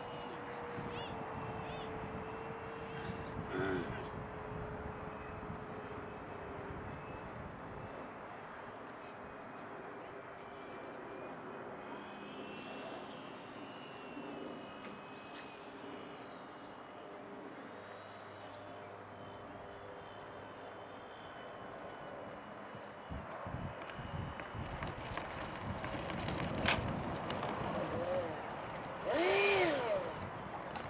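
A 90mm electric ducted fan on a model jet runs throttled back on landing approach. It gives a steady whine that steps down in pitch twice in the first few seconds and fades out after about seven seconds, leaving a faint steady noise.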